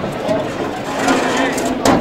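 Voices of people talking around, with a sharp knock near the end.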